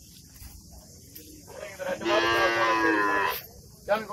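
Zebu cattle mooing: one long, steady moo starting about two seconds in and lasting just over a second.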